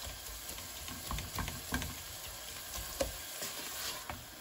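Sliced onions frying in a large aluminium pot while a wooden spoon stirs them: a steady sizzle with irregular scrapes and knocks of the spoon against the pot, the loudest knock about three seconds in.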